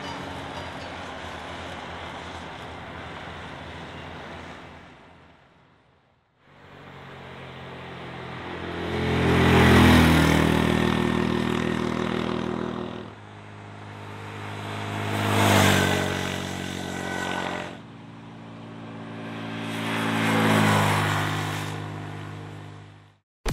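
Small Honda 125 cc single-cylinder motorcycles riding by. A steady engine sound fades away, then after a brief gap three pass-bys follow, each engine note growing louder as the bike approaches and dropping off as it goes past.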